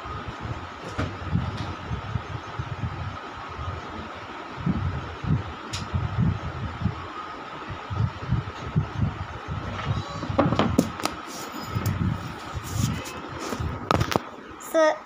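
Handling noise on a phone's microphone: irregular low rumbles and knocks as the phone is moved about with its camera covered, over a faint steady whine, with a few sharp clicks near the end.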